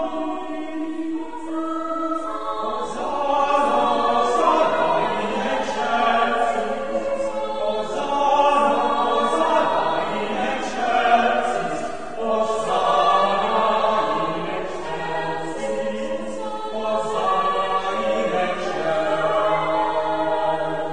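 Church choir singing unaccompanied-sounding sustained chords in several parts, with lower voices joining about two seconds in, in a resonant cathedral.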